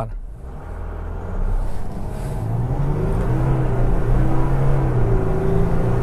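VW Amarok V6's 3.0 V6 turbodiesel under full-throttle acceleration from a standstill, heard from inside the cabin. The engine note climbs steadily with road speed.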